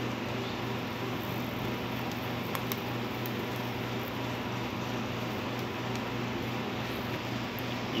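A steady mechanical hum with an even hiss, like a fan running, with a couple of faint clicks about two and a half seconds in.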